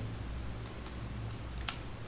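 Computer keyboard being typed on: a few faint keystrokes, then one louder key click near the end, over a steady low hum.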